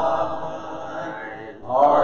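Congregation singing a hymn a cappella, voices only and no instruments. A held phrase fades out about a second and a half in, and the next line starts right after.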